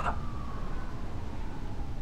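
Faint distant siren, its wail falling slowly in pitch, over a low steady hum.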